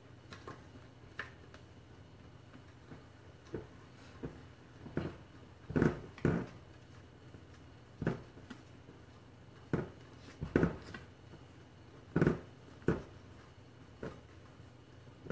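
Spatula folding meringue into batter in a stainless steel bowl: irregular scrapes and knocks against the bowl every second or so, the loudest about halfway through and near the end.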